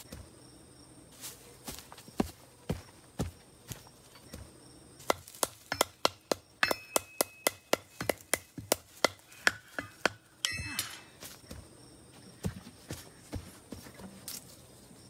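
Irregular sharp knocks and clicks, sparse at first, then coming two or three a second through the middle, with a brief busier flurry about ten seconds in before thinning out. Behind them is a steady, high-pitched insect chirring.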